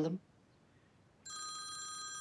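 A phone ringtone starts abruptly about a second in, a steady electronic tone held at several fixed pitches: an incoming call.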